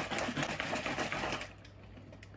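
Liquid sloshing in a 1.5-litre plastic bottle shaken rapidly by hand to dissolve fertilizer powder in water, a fast even rattle that stops about one and a half seconds in.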